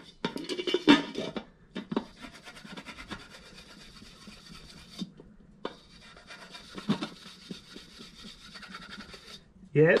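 Dry #0000 steel wool scrubbed back and forth on a VW hubcap's rusty, pitted chrome, scouring off the rust. A steady scratchy rubbing follows some louder, uneven scrapes in the first second or so, with a short break about halfway through.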